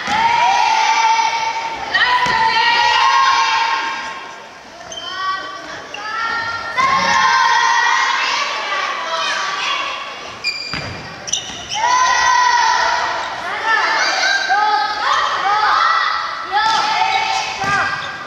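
A group of young children shouting and cheering in high voices during a dodgeball game, many calls overlapping, with the dodgeball now and then thumping on the gymnasium floor.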